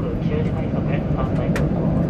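Steady low rumble of a KiHa 85 series diesel railcar running, with its engine and wheels on the rails, heard from inside the car.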